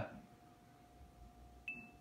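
A single short, high electronic beep from the AlexaPi's speaker near the end, its cue that the wake word was detected and it is ready to record. A faint steady hum runs underneath.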